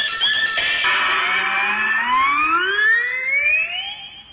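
Anime soundtrack: a pitched cartoon sound gliding steadily upward in pitch for about three seconds, after a busy first second of music and effects.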